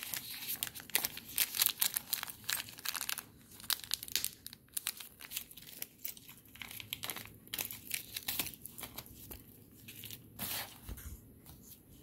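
Clear plastic bags of beads crinkling and rustling as they are handled, with many irregular crackles throughout.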